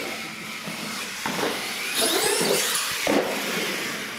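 Radio-controlled monster truck's motor and drivetrain whining as it drives, the whine rising in pitch about two seconds in, with a couple of sharp knocks.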